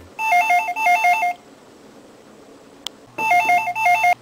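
Electronic office desk telephone ringing twice with a fast warbling trill. The rings are about three seconds apart.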